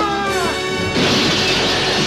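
Plate-glass office window shattering loudly about a second in as bodies crash through it, the breaking glass going on to the end, over music whose held notes glide downward just before the crash.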